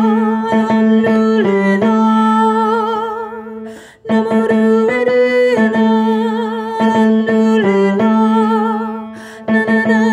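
A woman singing a melody with instrumental accompaniment, holding notes with vibrato. The phrase dies away about four seconds in, starts again, and dips once more near the end.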